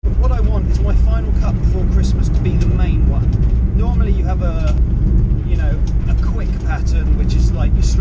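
Steady low rumble of a van's cabin, engine and road noise, under a man talking.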